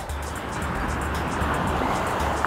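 Ocean wave breaking and surf washing up the beach, a steady rush that swells toward the middle, over background music with a low pulsing beat.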